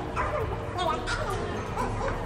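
People's voices calling out over background music.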